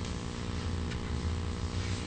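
Steady low hum in a large hall, with a faint click about a second in.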